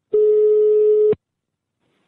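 Telephone line tone: a single steady beep about a second long that starts cleanly and cuts off sharply, heard over the call audio.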